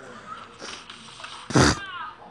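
A sudden loud thud about one and a half seconds in, followed straight away by a short cry falling in pitch, as a person lands hard in a trampoline fail.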